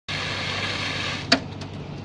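Portable fire extinguisher discharging in a loud, steady hiss at a car fire, cutting off after about a second, then a single sharp click.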